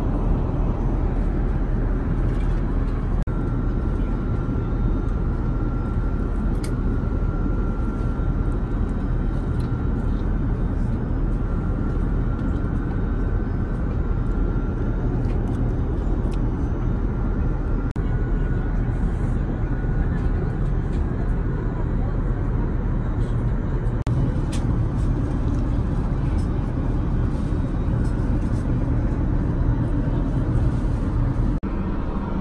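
Steady cabin noise of an Airbus A380 at cruise: an even rush of airflow and engine drone, heaviest in the low range. A faint high tone sits over it through the middle stretch.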